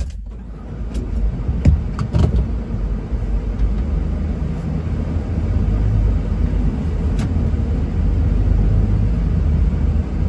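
A vehicle driving at low speed, heard from inside the cabin: a steady low rumble of engine and tyres that grows gradually louder. A few light clicks come in the first two seconds and once more about seven seconds in.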